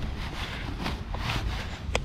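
Rustling of backpack straps against a padded jacket as a backpack is settled onto the shoulders, with a sharp click near the end as the chest-strap buckle snaps shut. A steady low rumble runs underneath.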